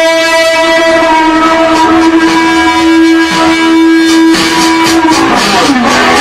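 Solo electric guitar: one long sustained note held for about four seconds, then notes bent down and back up near the end.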